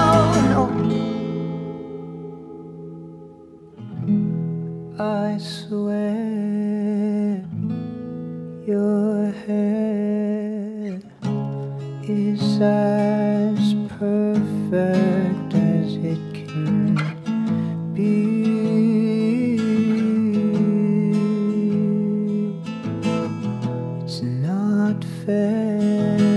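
Recorded song music: a full chord rings out and fades over the first few seconds, then acoustic guitar comes back in about four seconds in with strummed chords in short phrases with brief pauses.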